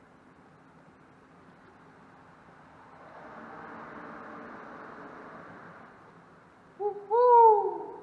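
A bird's loud hooting call near the end: a short note, then a longer one that rises briefly and falls away in pitch. Before it, a faint rushing noise swells and fades.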